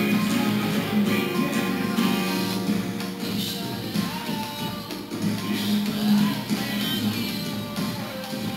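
Acoustic guitar with a capo on the first fret, strummed in a simple steady rhythm through an A minor, F and G chord progression.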